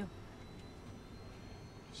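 Steady low hum of an airliner cabin, with a faint thin high whine over it.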